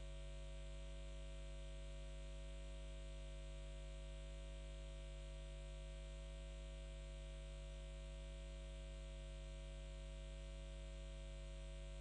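Faint, steady electrical mains hum: a low drone with a few higher tones above it and a faint hiss, unchanging.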